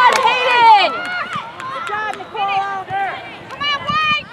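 Several high-pitched voices shouting and calling out over one another, loudest in the first second and again near the end.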